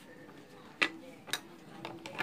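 Two sharp clicks about half a second apart, then a fainter one near the end, over low room noise.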